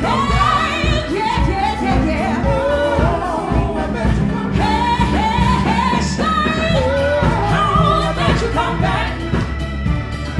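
Live band music: a woman sings lead over electric guitar, bass guitar, drums and a Hammond organ, her voice sliding between notes and holding them.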